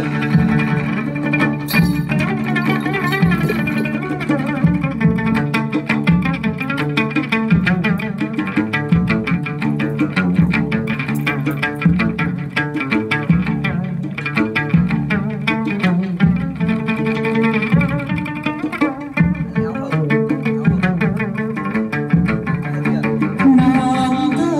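Chầu văn ritual music: string instruments playing over a fast, steady clapping percussion beat.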